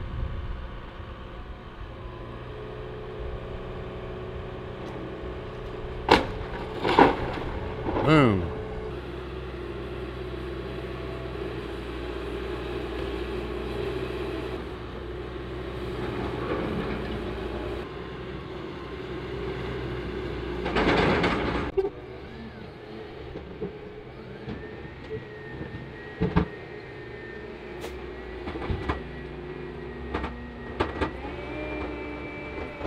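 John Deere 160G LC excavator's diesel engine running under load as it tears down a building, with loud crashes of timber and roofing about 6, 7 and 8 seconds in, the last with a falling screech, and another longer crash around 21 seconds. In the later part a steady high whine and scattered clicks take over.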